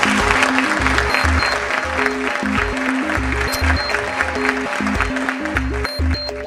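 Audience applauding, with background music that has a pulsing bass line and a repeating melody playing over it. The applause cuts off near the end while the music goes on.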